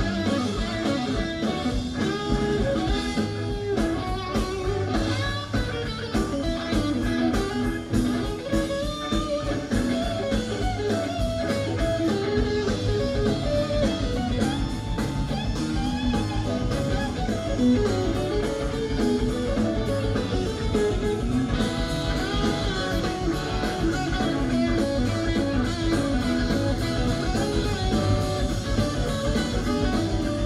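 A live rock band playing an instrumental blues-rock jam: electric guitar playing melodic lead lines over a drum kit and band backing.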